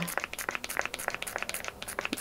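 Pump-bottle dispenser squirting runny leave-in conditioner into a palm: a dense run of small, quick clicks and wet sticky crackles from the pump and the product on the hand.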